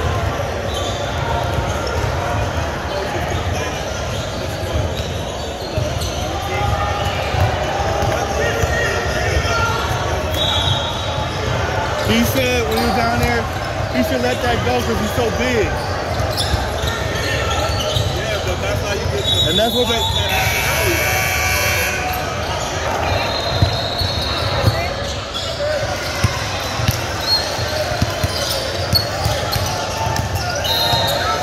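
Basketball game in a gym: a ball bouncing on the hardwood court as it is dribbled, with spectators and players talking in the background, echoing in the large hall.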